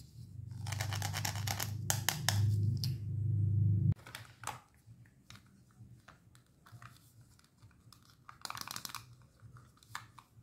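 Hands handling Velcro-joined plastic toy fruit and vegetables. Scratchy rasping over a low rumble for the first few seconds, which stops abruptly about four seconds in. After that come quieter plastic clicks and rustles, with another short rasp near the end.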